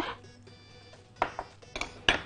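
Sliced onion tipped from a small glass bowl into a larger glass mixing bowl, with two short glassy knocks about a second and a half in. Faint background music plays underneath.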